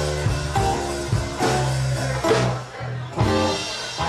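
Live blues band playing an instrumental passage: guitar over a bass line and drums. The band eases off briefly just before three seconds, then comes back in on a strong accented hit.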